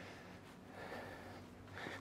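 Faint breathing of a man, picked up by a lavalier mic clipped to his back pocket, over a low steady hiss.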